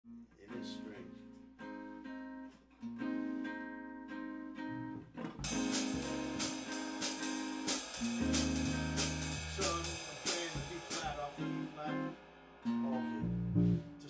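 Small jazz group playing loosely: archtop guitar chords ring alone for the first few seconds, then a drum kit comes in with cymbal strikes about five seconds in, and electric bass notes join around eight seconds.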